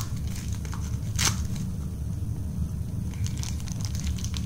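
Plastic packaging being crinkled and torn open: a few sharp crackles, the loudest about a second in, over a steady low hum.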